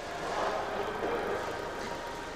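Steady background noise of a busy workroom: an even, indistinct wash of activity that swells a little about half a second in.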